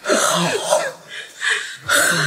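An older woman's agitated voice in short, breathy outbursts, exclaiming '好' ('good') in anger.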